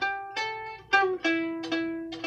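Gittern being played: a melody of single plucked notes, several a second, each with a sharp attack that rings and fades, the loudest about a second in.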